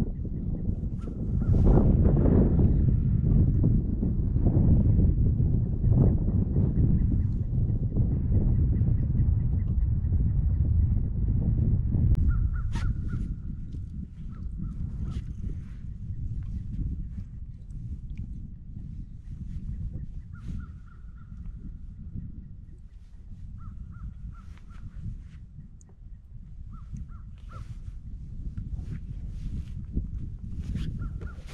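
A low rumble, loudest over the first twelve seconds, then birds calling several times, short pitched calls every few seconds.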